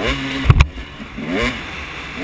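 Dirt bike engine heard from the rider's helmet camera, revving up in short bursts, with two sharp knocks about half a second in.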